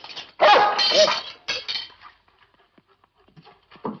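A dog barking a few times in the first two seconds.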